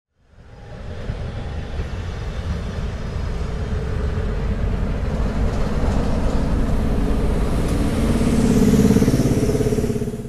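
Diesel locomotive engine running with a deep, steady rumble that fades in at the start and swells louder, with a held drone, around nine seconds in.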